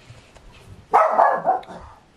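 Pet dog barking indoors: a loud, quick run of a few barks about a second in, set off by someone walking past the door.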